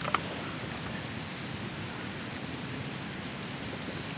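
Steady, even outdoor background hiss, with a faint click just after the start.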